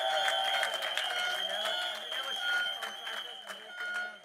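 Crowd clapping and cheering, with a steady high-pitched tone held over the clapping. It dies away near the end.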